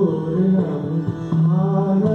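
A man singing an Indian devotional song in slow, chant-like phrases of long held notes, over a steady drone with sitar accompaniment.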